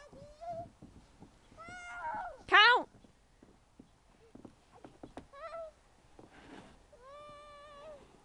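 A small child's high-pitched squeals and calls: a few short ones, one loud rising-and-falling squeal about two and a half seconds in, and a long held call near the end.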